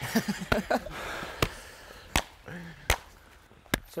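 Brief laughter, then several sharp clicks or taps, about one a second.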